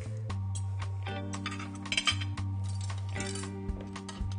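Background music with sustained low notes, and a few light clinks of a fork on a plate about two seconds in and again just after three seconds.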